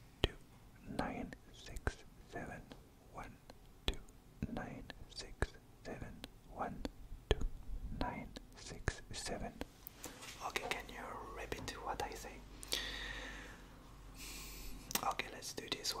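A man whispering a series of numbers slowly, close to the microphone, with soft sharp clicks between the words and a longer breathy hiss near the end.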